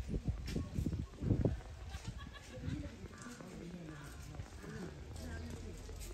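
Indistinct voices of people talking at a distance, with a few low thumps in the first second and a half and a steady low hum underneath.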